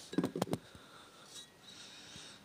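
Faint handling noise: a few soft clicks and knocks in the first half second, then quiet room hiss.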